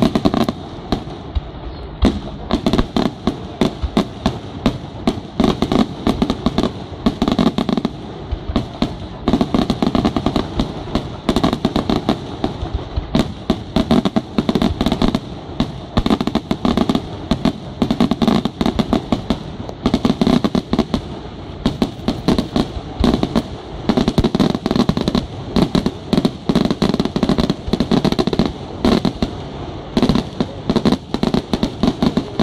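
Aerial fireworks shells bursting in a dense, unbroken barrage of bangs, several a second, over a continuous low rumble.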